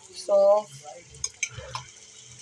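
A metal spatula stirring and scraping frying onions and whole spices in a non-stick kadai, with a few light clicks against the pan in the second half. A short spoken word sounds near the start and is louder than the stirring.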